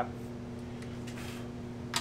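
Steady low hum of workshop room noise, with a faint rustle of handling about a second in and a short light click near the end.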